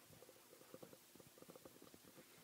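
Near silence: faint room tone with a few soft, irregular low ticks.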